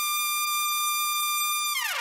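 Trumpet holding a single loud high note in the upper register, then falling off with a quick downward slide in pitch near the end.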